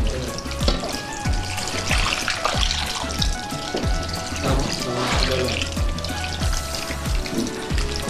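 Water poured in a steady stream from a glass jug into a stainless steel pot of stuffed vegetables (dolma), splashing onto the packed peppers and tomatoes, under background music with a steady beat.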